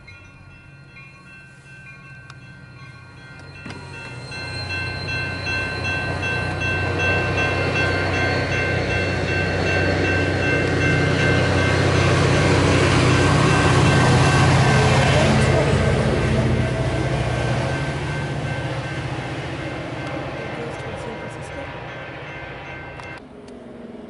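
Caltrain commuter train passing through the station: the engine hum and rail noise build from about four seconds in, peak near the middle and fade away. Railroad crossing bells ring over it.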